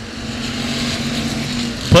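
Pure stock race cars' engines running as the field goes around a dirt oval, a steady drone that swells slightly.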